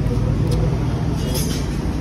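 Steady low rumble of background noise, with faint voices in the background and a couple of light ticks.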